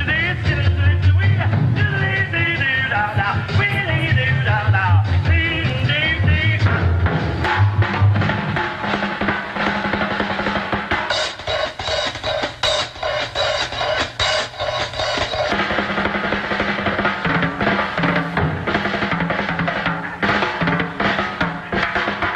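A swing band plays for the first several seconds, then it gives way to a fast drum kit solo of rapid snare and tom strokes, with a run of cymbal crashes in the middle.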